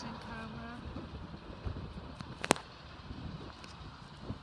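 Low, steady outdoor rumble of wind and handling noise on a handheld microphone, with a brief voice in the first second and one sharp click about two and a half seconds in.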